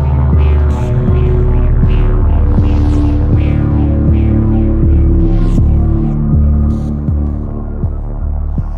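Instrumental electronic music: a deep, pulsing bass under steady held tones, with a short click about every three-quarters of a second.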